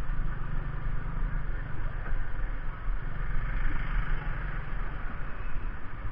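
Hero Splendor 100cc motorcycle's single-cylinder four-stroke engine running at low speed in traffic, a steady low rumble picked up by a camera mounted on the bike.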